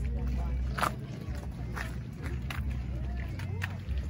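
Voices of people talking in the background over a steady low hum, with a few short clicks.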